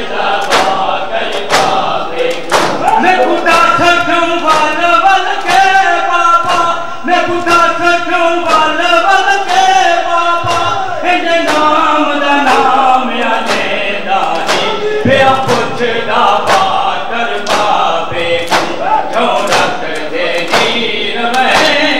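Crowd of mourners doing matam, striking their chests with open hands in unison about twice a second, under a chanted noha lament sung by men with the crowd joining in.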